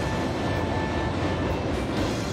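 A train running, heard as a steady, even rumbling noise.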